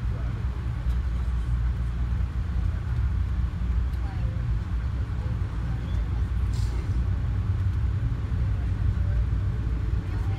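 Steady low rumble of a moving passenger train heard from inside the coach as it pulls away from a station and gathers speed. A brief hiss sounds about six and a half seconds in.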